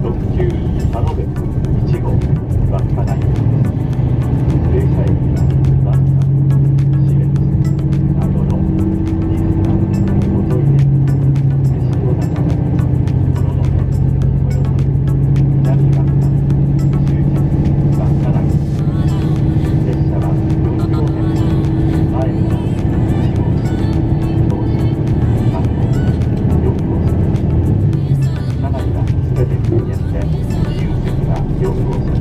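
Diesel railcar engine running with a steady low drone, heard from inside the moving carriage. The drone drops out briefly about ten seconds in, then resumes.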